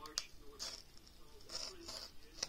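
Cardboard and paper of an iPhone 15 Pro Max box being handled: a sharp click early, then two short rustling slides of the paper insert. A faint voice talks underneath.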